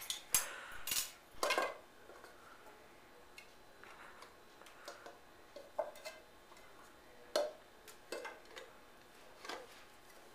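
Scattered clinks and taps on a glass candle holder as fingers dig and pry the red wax candle out of it. A cluster of sharper knocks comes in the first second and a half, then only occasional light taps.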